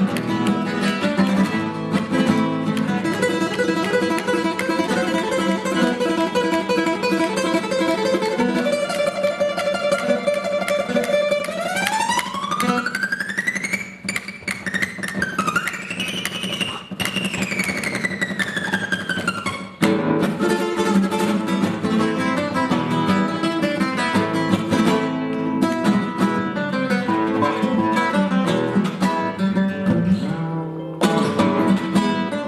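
Solo cutaway acoustic guitar played fingerstyle, a continuous instrumental melody over bass notes. In the middle, one note slides up about two octaves and then back down over several seconds before the tune picks up again.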